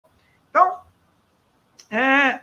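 Two short vocal calls, about a second and a half apart. The first is brief and falls in pitch; the second is held at one steady pitch.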